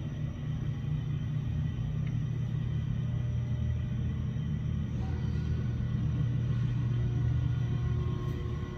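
Freight elevator car travelling in its hoistway: a steady low rumble with a faint, even hum of steady tones from the running machinery.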